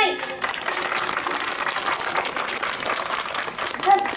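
Crowd applauding: a dense, steady patter of many hands clapping that starts just after a speech ends, with a brief voice near the end.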